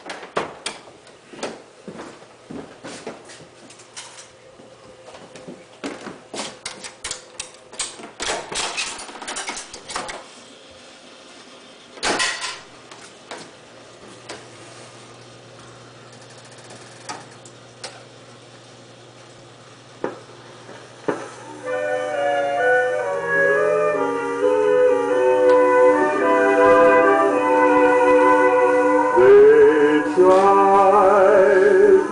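Wurlitzer 850 jukebox's 78 rpm record changer cycling: many quick mechanical clicks and clunks for the first ten seconds or so, a single louder clunk near the middle, then a low steady hum as the selected record is placed on the turntable. About two-thirds of the way in, the record starts playing and music rises to the end.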